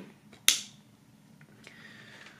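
A CD snapping free of the centre hub of a plastic jewel case: one sharp click about half a second in, followed by a few faint ticks of handling.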